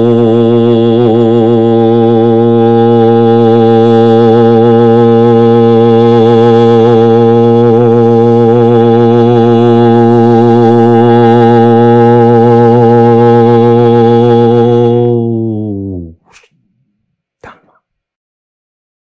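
A low voice sustaining one long toned drone, its overtones wavering as the vowel shifts, as vocal sounding in a sound-healing practice. The tone fades out about sixteen seconds in, its pitch sagging slightly as it dies. Two faint clicks follow near the end.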